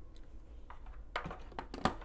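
A few short clicks and knocks of handling over a faint low hum. A USB-C cable is pushed into a Teenage Engineering OP-Z and the small synth is set down on a wooden desk. The clicks fall in the second half, the last one the loudest.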